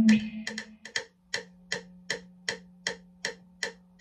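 Electric guitar notes ring out and fade in the first second, then a metronome click track ticks steadily at about two and a half clicks a second over a low steady tone.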